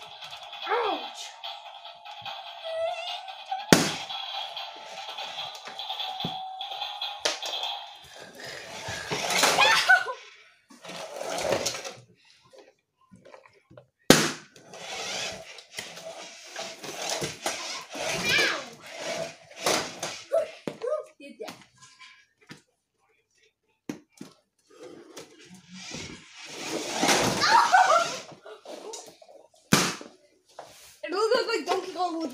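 Balloons popping with sharp, loud bangs, three times about ten seconds apart, amid a child's wordless vocalising. A steady electronic tone plays for the first several seconds.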